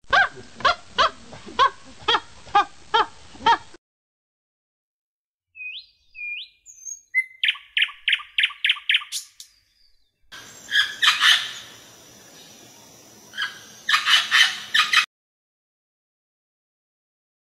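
Three short recordings of wild animal calls, one after another, each stopping abruptly. First comes a call repeated about twice a second. Then a few rising bird chirps lead into a quick run of calls. Last is a louder, noisier chorus of calls in bursts.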